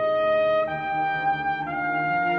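Orchestral music with a brass melody in slow, long held notes, moving to a new note about every second over lower sustained harmony.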